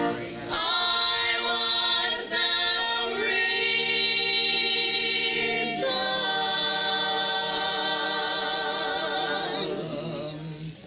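Church praise team of mixed women's and men's voices singing into microphones, holding long notes in harmony with vibrato and moving to new notes a few times. The singing tapers off as the song ends.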